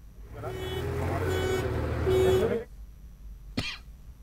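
A motor vehicle's engine running for about two seconds with people's voices over it, stopping abruptly, then one short sharp sound near the end.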